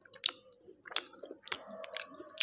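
Close-miked chewing of a fried samosa: soft wet chewing broken by three or four sharp crisp crackles of the pastry, roughly every half second.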